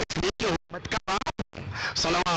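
A man's voice speaking through a microphone, chopped up by several abrupt, momentary dropouts to silence so that it sounds broken and stuttering.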